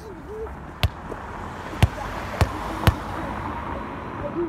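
Four sharp knocks at uneven intervals, over a steady outdoor background with a brief faint voice.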